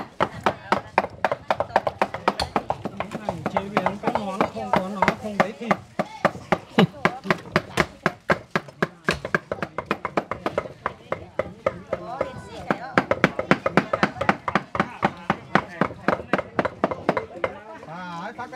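Meat being minced with knives on wooden chopping blocks: fast, steady chopping at about four to five strokes a second, with voices and music behind it.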